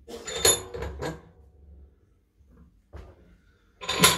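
Steel clanks and rattles at a bench vise as a bent nail blank is handled: a cluster of sharp metallic knocks in the first second, the loudest about half a second in with a brief high ring. After that it is nearly quiet, with one small click near three seconds and another sharp clank right at the end.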